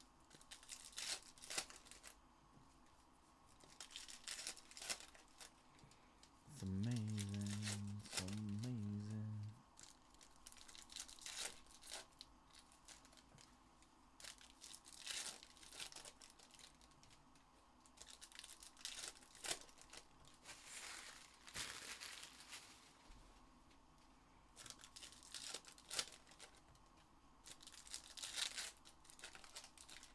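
Foil trading-card pack wrappers being torn open and crinkled by hand, in many short bursts. About a quarter of the way in, a low hum lasting about three seconds stands out above the rustling.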